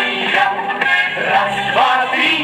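A 1979 Soviet 33 rpm vinyl single playing on a portable record player: a pop song with a voice singing over instrumental backing.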